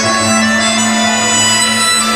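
The skater's free skate program music, played over the rink's sound system: a sustained melody over a steady, unbroken drone.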